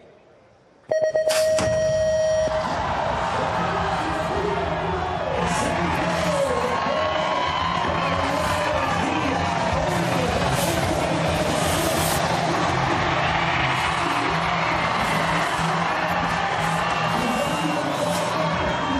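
BMX start gate sequence: after a silent random-delay pause, an electronic start tone sounds about a second in and the gate drops with a bang. A loud crowd then cheers steadily while the riders race.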